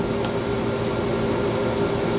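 Steady hum and airy hiss of running machinery, with a few constant low hum tones and an even high hiss throughout.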